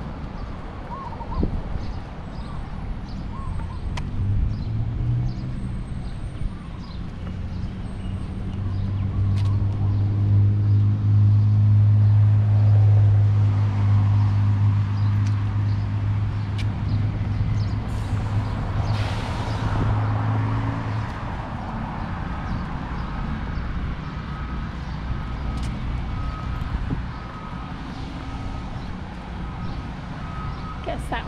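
A heavy engine drone from passing traffic or construction machinery, swelling to its loudest in the middle and fading out. Near the end, a construction vehicle's reversing alarm beeps repeatedly at one pitch.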